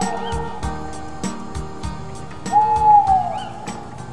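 Instrumental backing music of a children's owl song with a steady light beat, and an owl-like hoot that slides down in pitch about two and a half seconds in.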